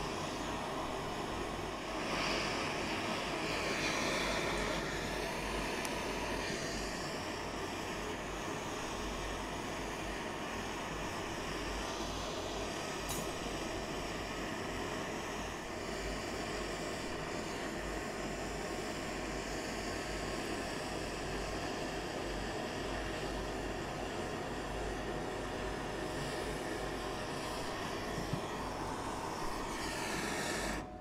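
Two gas torches burning with a steady roar, one melting gold in a melt dish and the other heating the ingot mold.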